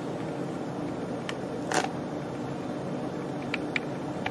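Steady low background hum with a few faint, brief crinkles from a plastic tortilla package being handled.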